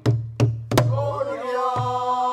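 Pansori buk barrel drum struck with a stick, each stroke a sharp crack with a deep boom. Three quick strokes fall in the first second and another comes near the end, while voices come in after about a second on a held sung note.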